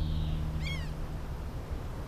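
The song's last held chord fades out, then a single short, high animal cry rises and falls over low outdoor background noise.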